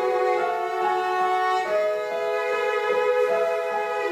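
Piano trio of violin, cello and grand piano playing classical chamber music, the strings carrying long held notes over the piano.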